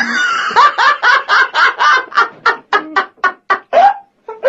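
Laughter in a rapid string of short bursts, about four a second, the bursts growing shorter and further apart near the end.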